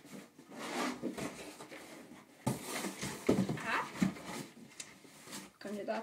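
A knife cutting into a cardboard box to make a hole: rough scraping and tearing strokes, the loudest starting sharply about halfway through.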